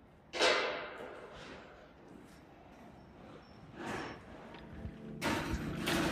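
A sudden loud thud that trails off in an echo, followed by a few fainter knocks; music comes in near the end.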